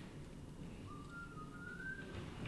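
A person whistling softly: two short notes starting about a second in, the second higher and rising slightly.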